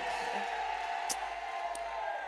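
Soft background music: a steady held chord under a low room murmur, with a couple of faint ticks.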